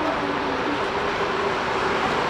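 Jet engine noise from an Airbus A380-841's four Rolls-Royce Trent 900 engines as the airliner rolls down the runway just after landing: a steady, heavy rumble with a few faint whining tones.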